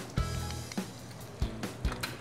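Soft background music with a few light knocks of a utensil against a saucepan.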